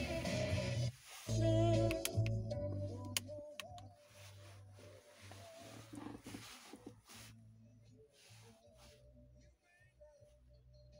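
Music playing through the car's stereo from the head unit; it cuts out briefly about a second in, comes back, then drops much quieter from about halfway through. A few short clicks sound around two to three seconds in.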